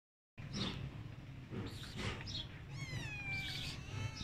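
Tabby kitten meowing: a few short, high mews in the first two seconds, then one longer meow about three seconds in that falls in pitch.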